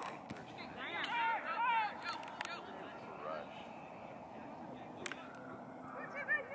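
Voices calling out across a soccer field during play, heard for about a second near the start, with a few sharp knocks scattered through, over steady outdoor background noise.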